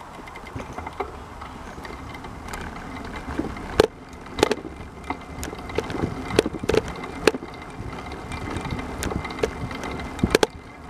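Rolling over a concrete path: a steady low rumble with irregular sharp knocks and rattles as the load jolts over the pavement, the loudest about four seconds in.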